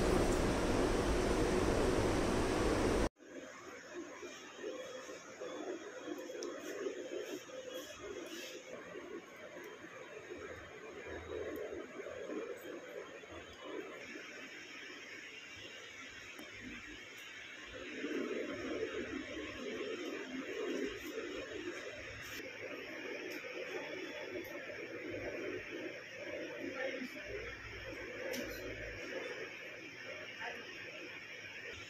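A steady hiss that cuts off abruptly about three seconds in, followed by low indoor room noise with faint, muffled, indistinct sounds.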